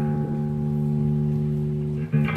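An electric bass guitar played through a bass overdrive/DI pedal built on a modified Darkglass B3K circuit: one held note rings steadily and fades slightly.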